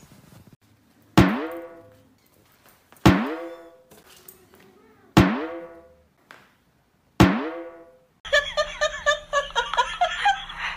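Four pitched, drum-like hits about two seconds apart, each ringing down over about a second, from a music or sound-effect track laid over the clip. Near the end a busier run of high, wavering, voice-like sounds starts.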